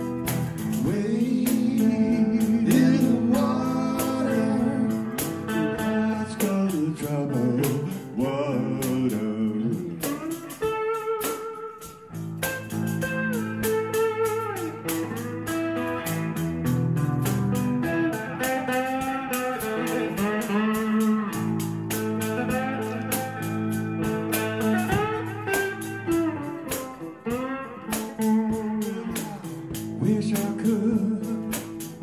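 Live blues instrumental break: electric slide guitar playing gliding, bending lines over a drum kit keeping a steady beat with cymbals. The band eases off briefly about twelve seconds in, then builds back up.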